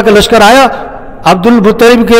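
A man preaching a sermon in Urdu, with a short pause about a second in.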